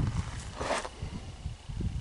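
Low, irregular rumble of wind on the microphone, with a short breathy hiss about halfway through.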